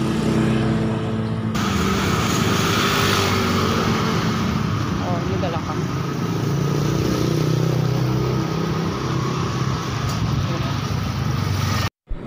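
Road sounds: motorcycle engines passing close by, under a steady rush of noise that grows brighter about a second and a half in.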